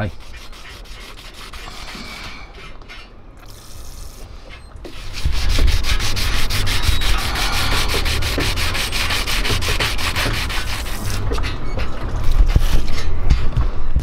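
Wet-and-dry sandpaper (280 grit) on a hand sanding block rubbing down a fibreglass gelcoat filler repair: a steady rasping rub that gets much louder about five seconds in.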